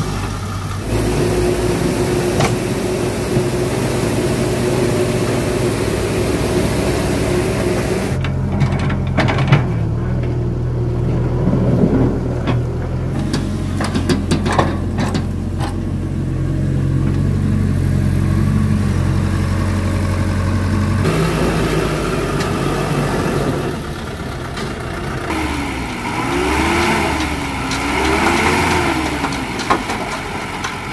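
Diesel engines of a dump truck and a mini excavator running steadily, with knocks and clanks between about 9 and 16 seconds in. Near the end, an engine's pitch rises and falls several times as the dump truck's bed is tipped to unload soil.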